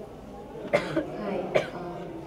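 A person coughing twice, about a second apart, picked up through a microphone.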